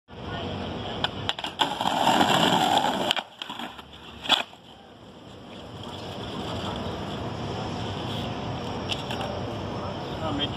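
Skateboard wheels rolling over rough stone paving, a steady grinding rumble that builds slowly through the second half. Earlier there are a few sharp clacks of the board, the loudest a little past four seconds in.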